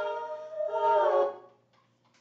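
Recorded female voices singing sustained polyphonic chords, the parts shifting pitch and gliding before the music cuts off abruptly about one and a half seconds in.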